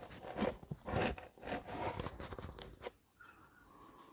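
Irregular rustling and crackling close to the microphone, which cuts off suddenly about three seconds in.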